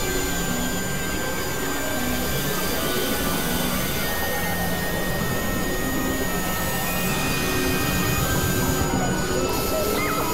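A dense, layered experimental noise mix: several music tracks playing over each other, blurring into a steady noisy drone. Short held tones are scattered through it, and voices are buried in the mix.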